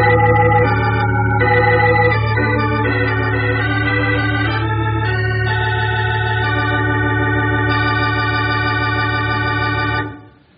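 Organ music cue closing the scene: a few sustained chords over a steady low bass note, settling about halfway through into one long held chord.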